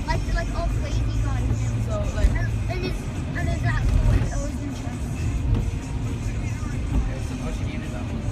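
Car's engine and tyre rumble, heard from inside the cabin while driving on a wet road, with music and a voice over it throughout.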